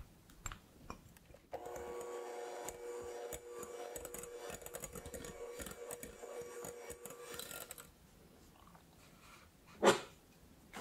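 Electric hand mixer running for about six seconds, its beaters whipping egg yolks into a thick meringue in a glass bowl, then switching off. Just before the end, a sharp clink of a metal sieve knocking against the glass bowl.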